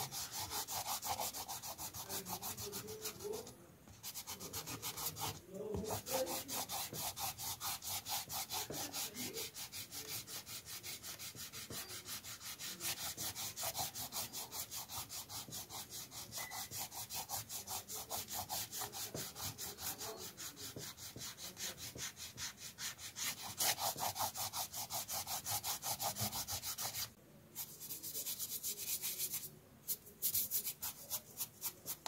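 A rubber eraser rubbing back and forth on sketchbook paper in rapid, regular strokes, several a second, with brief pauses, lifting the pencil guidelines from under the ink drawing.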